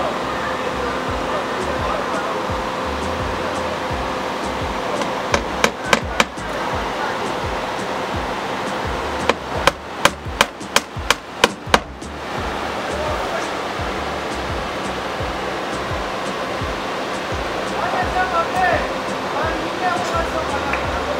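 Hammer strikes, a quick run of four about five seconds in and about eight more in fast succession near the middle, over steady background music with a low beat.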